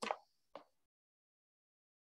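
Near silence on a video-call line: a brief tail of a voice sound at the very start and a faint short click about half a second in, then nothing at all.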